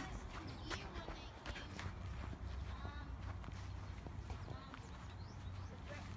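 Footsteps walking across a grass lawn, picked up by a phone microphone with a steady low rumble and scattered faint clicks.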